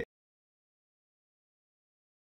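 Digital silence: the sound cuts off abruptly right at the start and nothing at all is heard after.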